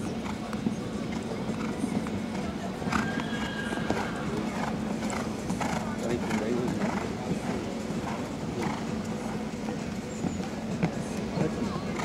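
Horse's hoofbeats at a canter on a sand arena, a muffled, irregular run of thuds.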